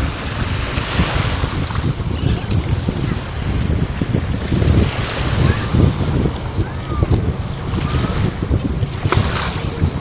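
Wind buffeting the microphone in a loud, uneven rumble, over the wash of small waves on a pebble shore.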